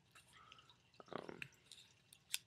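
Near silence: room tone with a few faint, short ticks and a brief hesitant 'um' about a second in.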